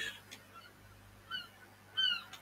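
A bird calling faintly: three short, downward-sliding calls about 0.7 s apart, the second the loudest, after a faint click near the start.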